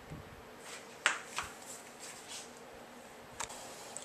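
A few light clicks and taps from small plastic parts being handled: a sharp click about a second in, a softer tap just after, and another near the end, over faint room hiss.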